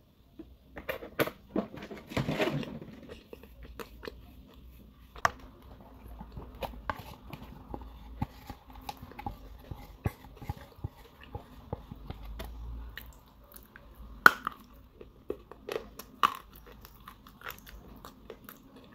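Close-up biting and chewing of a dry, crumbly chunk of clay: irregular crisp crunches and cracks, with the sharpest snaps about two and a half, five, fourteen and sixteen seconds in.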